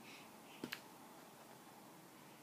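Near silence with room tone, broken by two quick soft clicks a little over half a second in.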